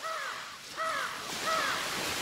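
A bird's harsh, cawing calls, three of them about two-thirds of a second apart, each arching up and falling away, over a steady rushing hiss.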